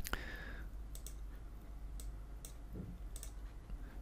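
Computer mouse buttons clicking a few times, some clicks in quick pairs, over a faint steady hum.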